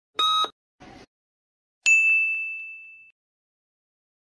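Electronic quiz sound effects: a short beep, the last of a series a second apart, then a single bright ding about two seconds in that fades out over about a second, marking the correct answer being shown.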